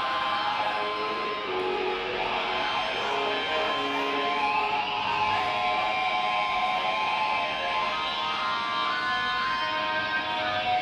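Live rock band playing: electric guitars over drums, with long held notes and no break.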